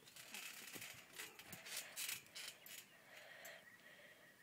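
Faint creaks and scratchy rustles from people shifting their weight on a trampoline, a handful of short noises in the first three seconds.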